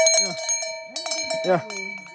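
Two hanging metal bells, a tall cone-shaped one and a round brass one, clanking against each other as they are swung. They strike several times near the start and again about a second in, leaving a sustained ringing tone.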